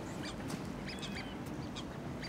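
Faint bird calls, a few short calls about half a second to a second in, over steady outdoor background noise.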